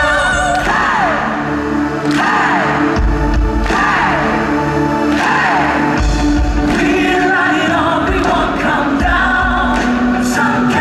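Live pop-rock band and a male lead singer performing an upbeat anthem through a concert sound system, with backing vocals, electric guitar and a heavy bass line.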